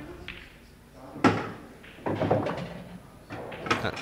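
Pool cue striking the cue ball with one sharp click a little over a second in, followed by balls rolling and knocking on the table as a yellow is potted, with more clicks near the end.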